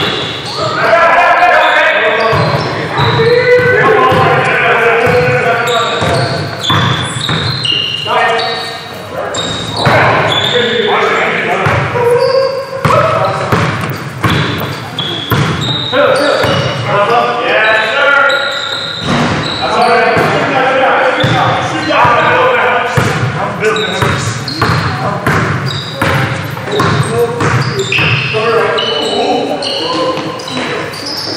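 Basketball bouncing and players' feet striking the floor during a game in a large gym, with many sharp impacts, and players' voices calling out across the court.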